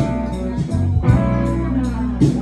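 Live band playing: electric guitar over a bass line, with a steady beat.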